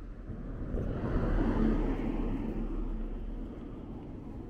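A car passing along the street, swelling to its loudest about a second and a half in and fading away over the next two seconds.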